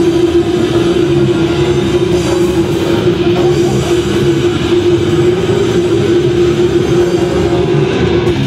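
Live heavy metal band playing loud, with distorted electric guitars, bass and drums; a single long held note rings over the band and stops near the end.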